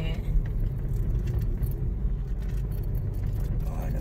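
Steady low rumble of a moving car heard from inside the cabin: engine and tyre road noise.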